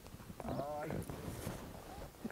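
A short vocal sound with a wavering pitch about half a second in, lasting under half a second, over faint background.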